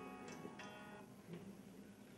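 Near silence: a pause in an address given through a public-address system, with the echo of the last words fading out during the first half-second.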